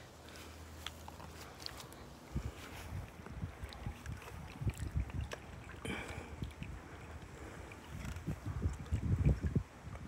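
Wind buffeting the microphone in irregular low gusts, strongest near the end, with faint scattered ticks and rustles.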